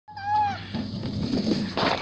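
A person sliding down a metal playground slide. A brief high falling squeal comes first, then a rumbling scrape of clothing on the metal slide bed that builds near the end.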